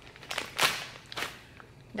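Three short rustling swishes close to the microphone, the second the loudest.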